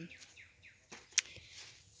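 Faint bird chirps in the background, a run of short falling notes, with a single sharp click a little past the middle.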